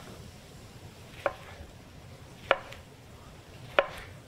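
Chef's knife slicing a lemon on an end-grain wooden cutting board: three sharp knocks of the blade hitting the board, evenly spaced about a second and a quarter apart, over a faint steady hiss.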